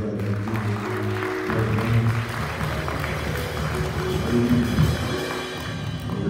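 Church music with sustained keyboard chords and a bass line over drums, at a steady level.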